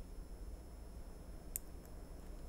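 Quiet room tone, with a single sharp snip of fingernail clippers cutting through a feather about one and a half seconds in.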